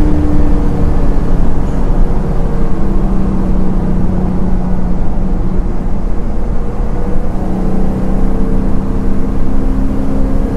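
A small-block Chevy 350 V8 crate engine breathing through long-tube headers and an X-pipe exhaust, pulling a car at highway speed. The engine note eases down a little at first, holds steady, then climbs gently as the engine speeds up in the last few seconds.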